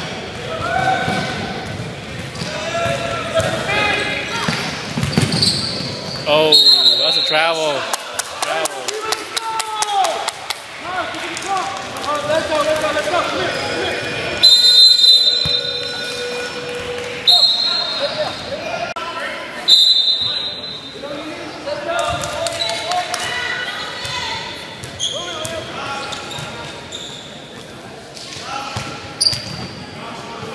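A youth basketball game in a gym: a ball bouncing on the hardwood floor, voices of players and spectators echoing in the hall, and several short high-pitched sneaker squeaks.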